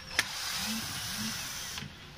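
Cordless drill-driver spinning in reverse to back a screw out of an electric planer's housing: a sharp click, then a steady motor run of about a second and a half that stops near the end.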